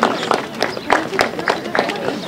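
Scattered hand claps from a small outdoor audience: a few sharp, uneven claps, about three a second, over a low murmur of voices.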